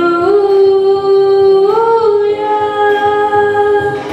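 A boy's unbroken voice singing a slow worship song, holding long notes that step up in pitch twice, with little or no accompaniment heard.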